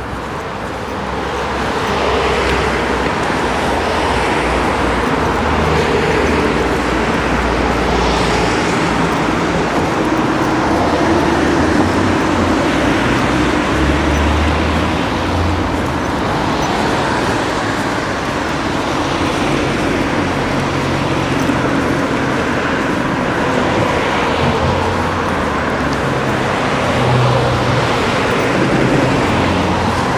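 Road traffic on a town street: cars driving past one after another, a steady noise of engines and tyres that swells and eases as vehicles go by.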